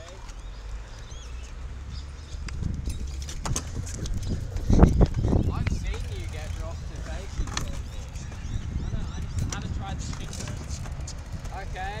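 Wheels rolling on a concrete skatepark ramp, a low rumble with scattered clicks and clatter, loudest in a burst of knocks about five seconds in.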